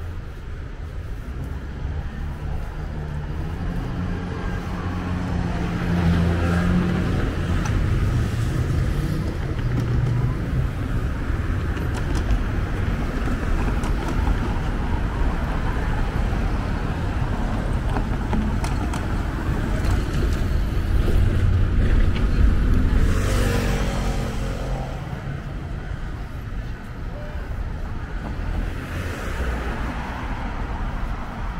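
Street traffic: cars and other vehicles going by with a steady rumble, one passing loudest about three-quarters of the way through, with faint voices of people nearby.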